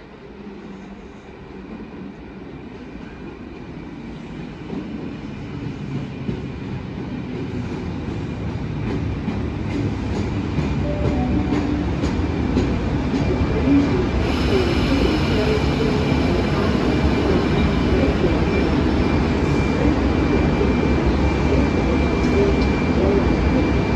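Electric passenger train approaching through an underground station. Its rumble grows steadily louder for about twelve seconds, then holds steady, with a thin steady whine over it.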